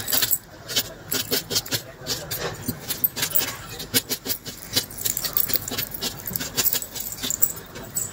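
Small kitchen knife dicing a red onion directly on a hard countertop: a quick, irregular run of sharp taps as the blade cuts through onto the surface, several a second.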